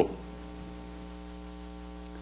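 Steady electrical mains hum in the microphone and sound system: a low, even buzz with a stack of overtones.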